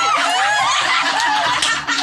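Several people laughing and giggling at once in high voices, overlapping throughout.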